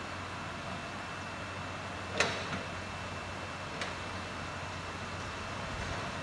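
Worksite machinery running steadily with a low hum under a wash of noise. A single sharp metallic clank rings briefly about two seconds in, with a smaller click a little later.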